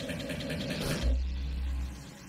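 Sparse passage of electronic music from a DJ mix: a low, steady rumble, then a deep bass note that comes in about a second in and is held to the end.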